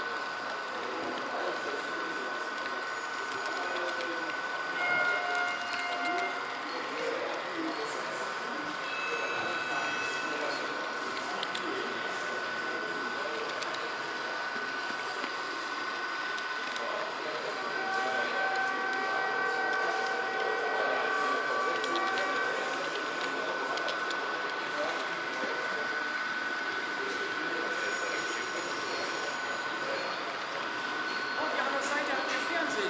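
H0 scale model train running along the layout track, with a steady high whine throughout over the murmur of voices in a large hall. Several brief held tones at a few pitches at once come and go, the longest about two-thirds of the way through.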